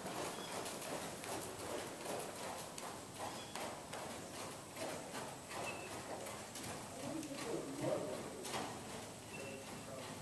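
Hoofbeats of a Thoroughbred horse moving under saddle on the footing of an indoor arena, a steady run of strides.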